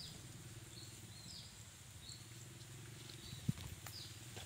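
Faint riverside ambience: short high bird chirps, repeated at irregular intervals, over a low steady hum. A single knock sounds about three and a half seconds in.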